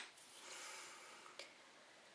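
Near silence: faint room tone with a soft breath-like hiss and a single small click about one and a half seconds in.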